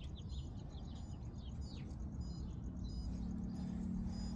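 Small birds chirping: a quick run of short, high, falling chirps in the first two seconds and a few more after, over a steady low outdoor rumble. A low steady hum comes in about three seconds in.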